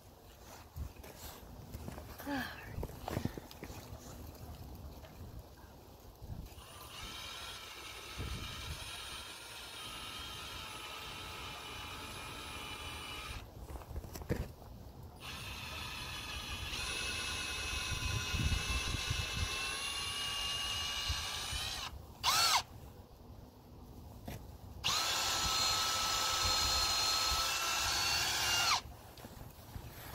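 Cordless drill boring a tap hole into a hickory trunk, its motor whining in separate runs. It runs for several seconds twice with a short pause between, gives a brief blip of the trigger that spins up and straight back down, then makes a final, loudest steady run near the end.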